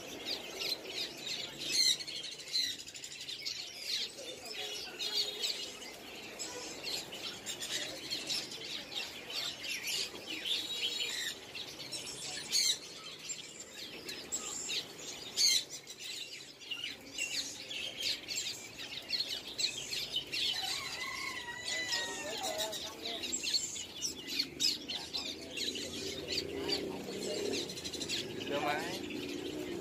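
Many caged small songbirds chirping at once: a dense, continuous chatter of short, high chirps and calls overlapping from several birds.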